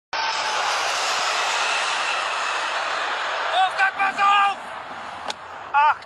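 Jet airliner flying low overhead: a loud, steady roar of engine noise with a high whine through it. About three and a half seconds in, the roar gives way to loud shouting voices, and a single sharp crack follows near the end.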